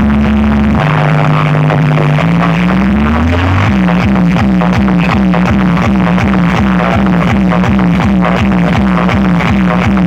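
Loud electronic dance music over a truck-mounted DJ speaker stack: long sliding bass notes, then from about four seconds in a fast, pulsing bass beat.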